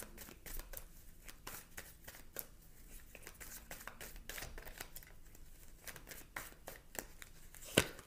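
Tarot cards being shuffled and handled off-picture: faint, irregular clicks and flicks of card stock, with one sharper snap near the end.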